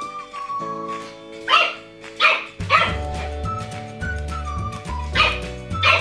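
A French bulldog puppy barking in short yaps, about five times, over background music whose bass beat comes in a little under halfway through.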